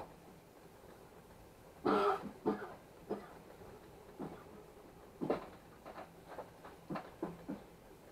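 A person coughing and clearing their throat: one hard cough about two seconds in, then a string of short coughs and throat-clearing sounds over the next five seconds. A 3D printer runs faintly underneath.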